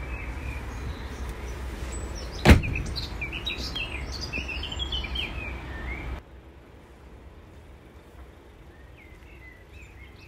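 One loud thud about two and a half seconds in, over a steady low rumble, with birds chirping; the rumble cuts off suddenly about six seconds in, leaving faint birdsong.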